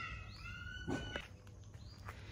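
Dogs fighting at a distance: a long, high whine that stops a little after a second in, with a short yelp just before it ends.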